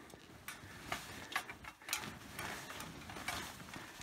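Faint scattered metal clicks and rattles from a steel ladder treestand carried on a hiker's back, with soft rustling and snow crunching as he crouches under a fallen log.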